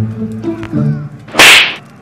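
Cartoon sound effect: a low stepped musical tone, then about one and a half seconds in a single loud, sharp swish of an arrow flying past.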